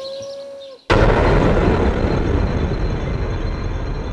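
A drawn-out spoken vowel trails off, then a loud, deep rushing rumble cuts in suddenly about a second in and carries on, easing only slightly.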